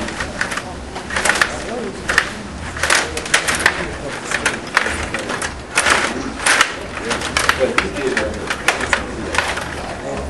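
Stiga table hockey game in fast play: irregular clusters of sharp plastic clacks and rattles as the control rods spin and the players strike the puck and the boards.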